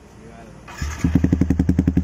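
Motorcycle engine breathing through an Akrapovic slip-on exhaust, starting up a little under a second in and settling straight into an even idle with a rapid, regular exhaust beat.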